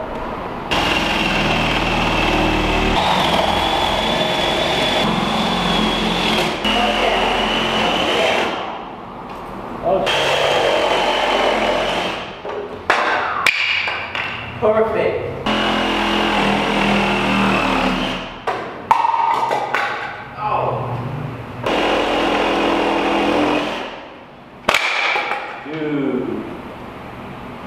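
Power saw cutting a round vent hole through a plywood roof deck, with a high whine. It runs in long stretches that stop and start again several times.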